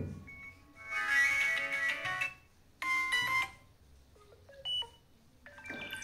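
A Vivo Y02T smartphone's speaker playing short previews of its built-in ringtones one after another. Each melody cuts off abruptly after a second or so as the next ringtone is tapped, and a new one starts near the end.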